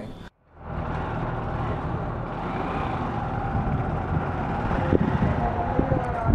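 Steady outdoor street background noise with motor traffic running, starting after a brief dropout about half a second in.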